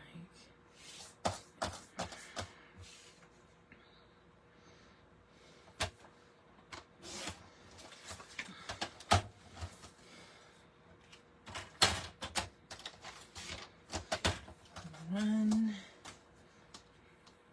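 Paper being handled and cut on a sliding paper trimmer: rustling and sliding of cardstock, with scattered clicks and a few sharp clacks of the cutting arm. A short hummed voice sound comes near the end.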